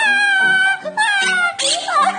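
A woman's long, high-pitched 'aaah' cry, then a second shorter cry that falls in pitch, as a parakeet pulls at her hair, over background music.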